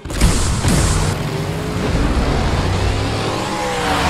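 A sharp thump, then a car engine revving up and down over a low music drone.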